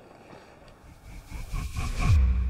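Low, steady outdoor background noise, then a swoosh sound effect swelling up in the last half second.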